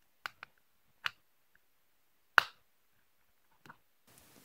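A few sharp plastic clicks, five in all and the loudest about two and a half seconds in, as a plastic pry tool is worked under the edge of a BlackBerry Classic's back cover.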